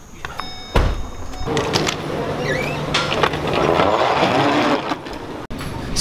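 SUV power liftgate being closed from its button: a brief steady high tone and a sharp thud near the start, followed by a steady low hum under mixed background noise.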